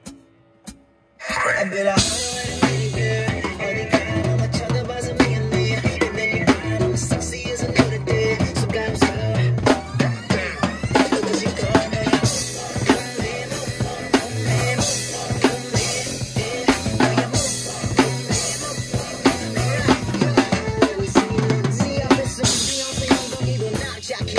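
Rock drum kit played along to the song's backing track: after a near-silent break, kick, snare and Sabian AAX cymbals come in about a second in with a driving beat over bass and music. The cymbals wash brighter from about halfway.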